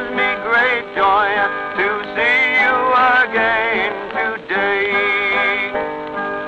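Early country sacred song played from a Champion 78 rpm record: male singing with vibrato, accompanied by piano and guitar.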